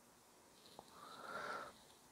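A faint sniff, a breath drawn in through the nose between sentences, swelling and fading over about a second, with a small mouth click just before it.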